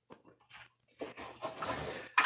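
Soft crackling and rustling, starting with a few short clicks about half a second in and running on more steadily through the second half.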